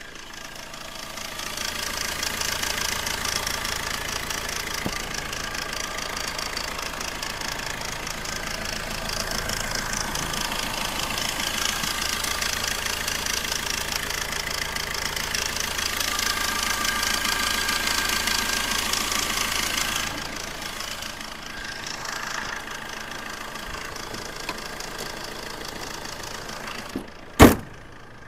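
Tata Indica Vista's 1.3-litre Quadrajet four-cylinder turbodiesel idling steadily, heard close at the open engine bay, with a fine rapid ticking in its sound. It gets a little quieter about twenty seconds in, and a single sharp knock sounds near the end.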